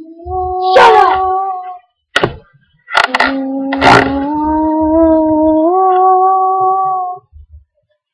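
A girl's voice holding long, steady sung notes in a howl-like wail, two long notes with the second stepping up in pitch near its end, broken by a few short sharp noises in between.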